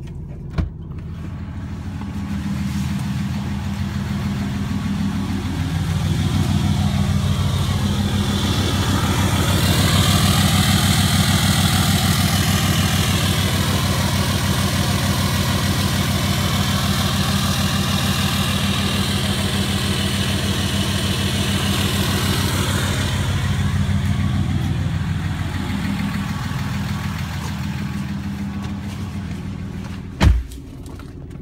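A 2016 Ram 2500's 6.7 L Cummins turbo-diesel idles steadily through a 4-inch straight-piped exhaust with its DPF and EGR deleted. It grows louder in the middle, heard close to the tailpipe, then fades again. There is a sharp click about half a second in and a thump at the very end.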